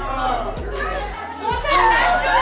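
Background music with a steady bass beat under a crowd of young people talking and shouting over one another.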